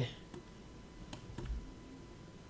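Three faint computer mouse clicks spread over the first second and a half, over quiet room tone.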